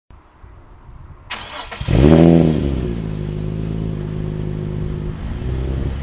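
Nissan 350Z's 3.5-litre V6 cranked over by the starter and catching about two seconds in, the revs flaring up briefly, then dropping back to a steady idle through the exhaust.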